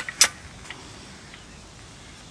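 Two sharp metal clicks a fraction of a second apart, then a faint click: the metal pulley head of a rescue hoist's upper offset mast knocking as it is turned over in gloved hands.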